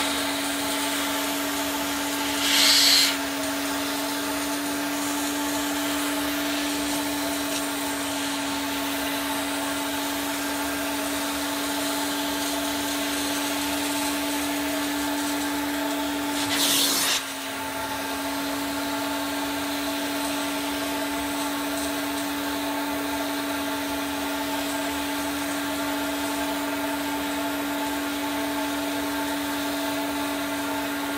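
Carpet extractor running with a steady motor drone while its wand is drawn across car carpet, sucking up water. Two brief, louder hissing rushes break in, about three seconds in and again just past halfway.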